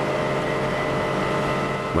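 Steady hum of factory machinery, several even tones over a noisy drone, without a clank or knock, as the retort hatch is swung shut.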